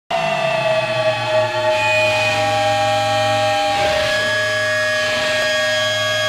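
Sustained synthesizer pad of held electronic tones over a low drone, starting abruptly with a slight downward slide in pitch and swelling briefly in the middle.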